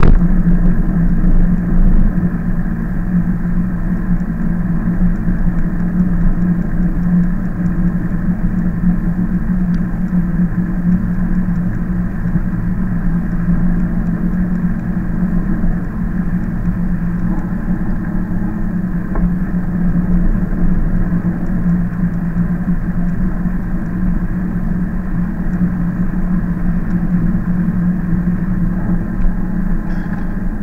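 Steady, muffled rolling rumble of an e-bike in motion, heard from a camera on the bike: wind and tyre noise with a constant low hum under it.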